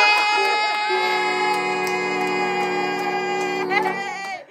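Music: long held notes, a high note from the start joined about a second in by a steady lower note, both held for about three seconds and breaking off near the end.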